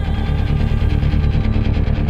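Background score of a TV drama: a loud, low rumbling drone with a steady pulse and faint held tones over it.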